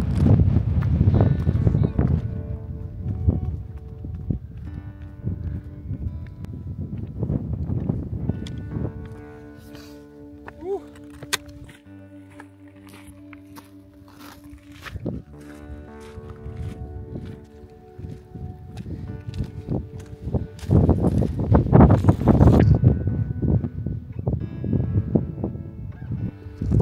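Wind buffeting the microphone at the start, giving way to background music of long held notes; loud gusts of wind on the microphone return about twenty seconds in.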